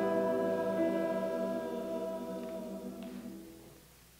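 A church choir holding the final chord of an anthem, the voices dropping out and the sound fading away in the last second or so.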